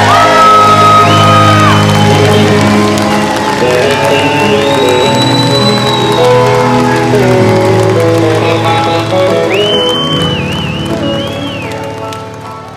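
Music: sustained chords with long held high notes that bend at their ends, fading down near the end.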